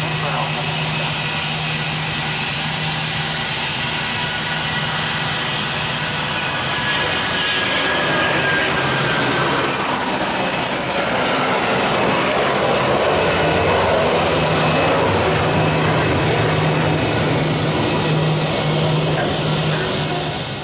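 Learjet 45's twin Honeywell TFE731 turbofan engines at takeoff power as the jet rolls, lifts off and climbs past. The noise swells about seven seconds in, with a high whine falling in pitch as the jet goes by.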